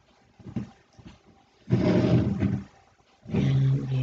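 Two low, drawn-out vocal sounds, about a second each, the first about two seconds in and the second near the end.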